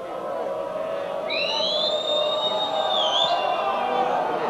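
A long shrill whistle that rises as it starts, holds for about two seconds and dips just before it stops, over a din of voices from the stands.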